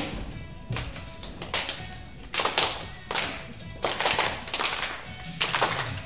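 A group of young performers clapping their hands in a slow, steady beat, about one clap every three-quarters of a second, over faint backing music.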